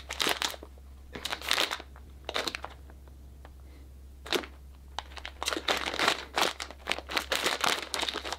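Plastic bag of De Cecco dried pasta being handled and turned over, crinkling in short, irregular bursts.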